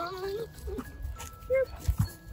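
Two dogs, one a Belgian Malinois, playing around their handler on grass. A drawn-out rising vocal sound trails off at the start, a short high whimper comes about one and a half seconds in, and a dull thump falls just before the end.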